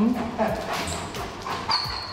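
A dog whining in thin, high notes, with footsteps and claws knocking on a tiled floor as it heads up the steps to a washing sink.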